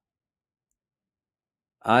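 Dead silence, then a voice begins speaking near the end.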